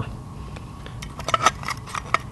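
Small, sharp metal clicks and scrapes, several in quick succession in the second half, as the mechanism of a classic VW speedometer is pushed out through its metal housing.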